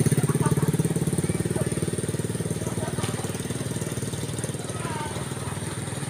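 A small engine running with a rapid, even chugging that grows steadily fainter.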